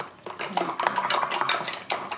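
Light clattering of painting tools being handled on the table: a quick, irregular run of clicks and clinks.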